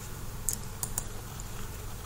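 A few faint, light clicks of a computer mouse, about half a second to a second in, over a low steady hum.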